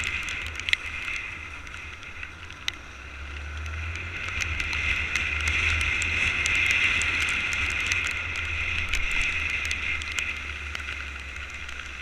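Motorcycle riding on a wet road in the rain, heard through a GoPro housing: engine, tyre spray and wind noise, growing louder in the middle and easing off near the end. Scattered sharp clicks, typical of raindrops hitting the camera.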